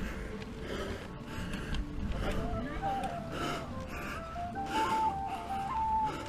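A cyclist breathing hard in quick, rhythmic gasps while pedalling up a very steep climb, the panting of heavy exertion. Music plays faintly underneath.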